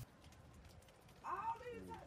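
Near silence for about a second, then a faint person's voice.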